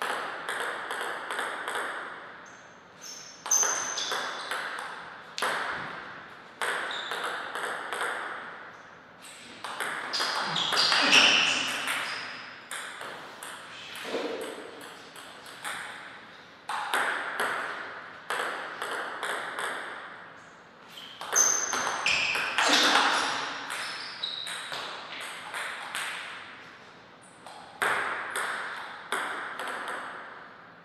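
Table tennis rallies: the celluloid-type plastic ball clicking back and forth off the table and the rubber-faced bats in quick runs of hits, with short pauses between points.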